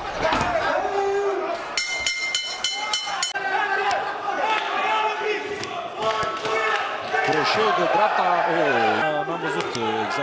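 Kickboxing fight audio: voices shouting over the bout, with sharp thuds of strikes landing. A short run of quick, high ringing pulses comes about two seconds in.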